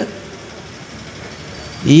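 A pause in a man's speech over a public-address microphone, filled only by a steady low background noise. He starts speaking again near the end.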